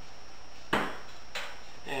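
A single sharp knock, probably a hard kitchen item set down or a door shutting, with a short ring after it. A lighter clack follows about half a second later.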